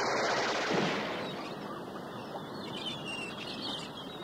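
A noisy rush of action sound effects, gunfire-like, fading steadily away, with faint high chirps near the end.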